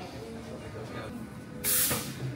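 A short, sharp burst of hissing steam from a café espresso machine, about a second and a half in, heard over café chatter and background music.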